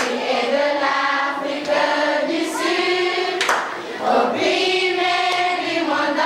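A group of voices singing together in chorus, with a sharp clap or knock at the start and another about three and a half seconds in.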